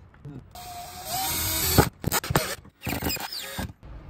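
Cordless drill driving a screw into the wall to fix a mounting bracket, running in short bursts: one run of about a second ending in a sharp click, then a second shorter run.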